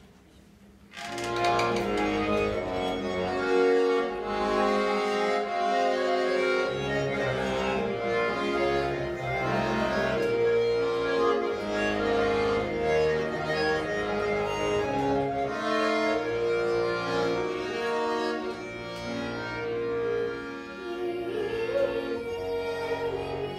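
Solo accordion playing the instrumental introduction to a Tatar folk song, starting about a second in with held chords under a melody. A child's singing voice comes in near the end.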